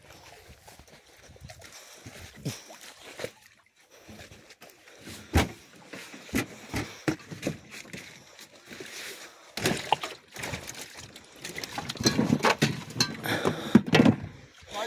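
Shallow river water sloshing and splashing, broken by scattered sharp knocks and clatters, with a busier stretch of noise near the end.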